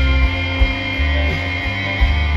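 Live rock band playing an instrumental stretch of a song: electric guitars over bass and drums, with regular drum hits.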